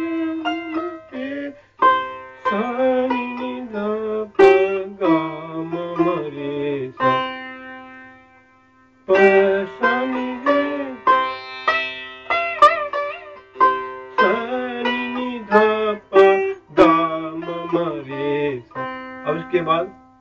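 Sitar playing a passage of a teentaal gat in raga Shyam Kalyan: quick plucked notes with pulled-string bends that glide up and down. About seven seconds in, one note is left ringing and dies away, and the playing starts again about two seconds later.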